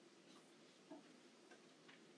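Near silence: faint room tone of a large hall, with one faint click about a second in.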